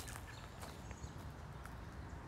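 Footsteps on a gravel and grass drive, a few uneven steps, over a steady low rumble of wind on the microphone.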